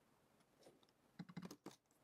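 Near silence with a short run of about half a dozen faint computer-keyboard keystrokes about a second in.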